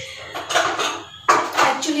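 Metal dishes and cutlery clattering as they are handled for washing up, with a louder clash just over a second in.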